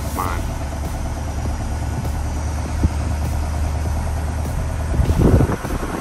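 Steady low road and engine rumble inside a moving vehicle's cabin, with a single sharp click about three seconds in and a louder burst of noise about five seconds in.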